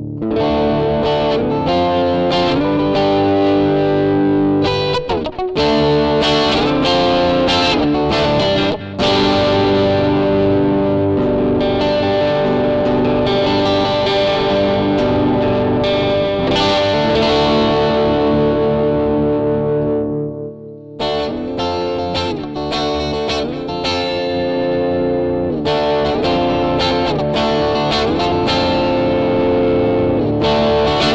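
Electric guitar played through a Heather Brown Electronicals Sensation Fuzzdrive fuzz-overdrive pedal: distorted, sustained chords and notes ringing out. The playing breaks off briefly about two-thirds of the way through, then starts again.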